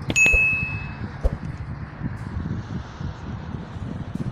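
A click, then a short bright bell ding that rings out and dies away within about a second. It is the sound effect of an on-screen subscribe-and-notification-bell animation. A steady low background rumble runs under it.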